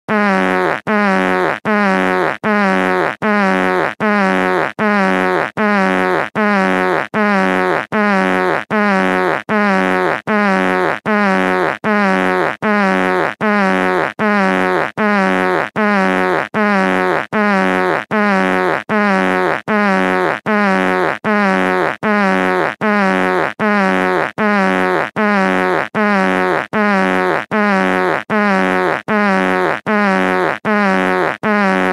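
A short pitched sound clip looped over and over, about one repeat a second, each repeat the same, with a short gap between repeats.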